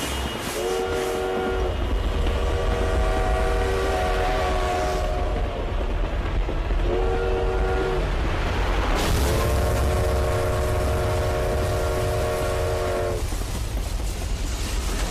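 Train horn sounding four times, short, long, short, long, each blast a chord of several notes held steady, over the low rumble of a moving train.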